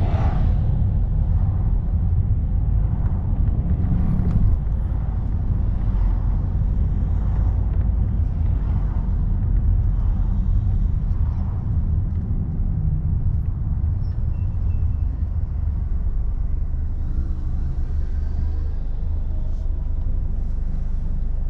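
Steady low rumble of a car's engine and tyres, heard from inside the moving car's cabin.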